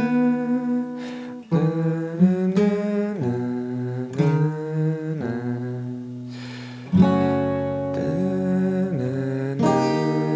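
Steel-string acoustic guitar with a capo, playing the verse's chord shapes (E minor, a D-flat shape on the top three strings, G, A) and letting each chord ring. A voice hums along.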